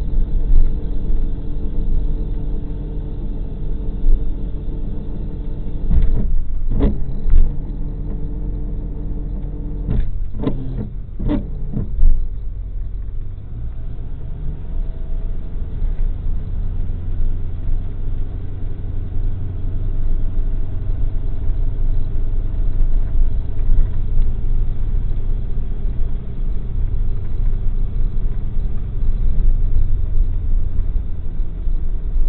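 A vehicle's engine running and road rumble, heard from inside the cab while driving: a steady drone for the first part, then a deeper, rougher rumble from about halfway on. A few sharp knocks or rattles come in two small clusters before the change.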